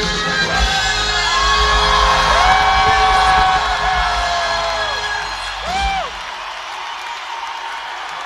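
Loud live Flemish schlager band music heard from within a large crowd, with audience voices whooping and singing along in long rising-and-falling calls. About six seconds in the bass stops and the sound drops to a quieter crowd.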